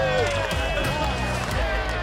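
Several men shouting and cheering in celebration, short exclamations over background music with a steady low bass.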